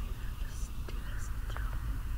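Soft whispering, too faint to make out words, with a few light clicks over a steady low hum.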